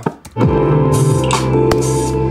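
Playback of an electronic beat's chorus section: a loud sustained keyboard chord over deep bass comes in about half a second in, with a falling low thump at its entry, hi-hat-like ticks and a sharp hit near the end.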